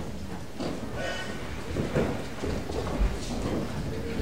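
Congregation sitting back down in church pews: shuffling, rustling and scattered knocks, with a low thump about three seconds in.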